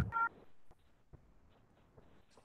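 Short electronic beep tones right at the start, then near silence with a few faint clicks.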